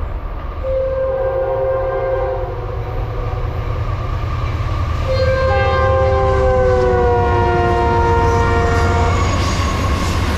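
Norfolk Southern diesel freight locomotive's multi-chime horn sounding two blasts: a short one about half a second in, then a long one from about five seconds in whose chord falls in pitch as the locomotive passes. Under it, the low rumble of the diesel locomotives grows louder as they draw alongside.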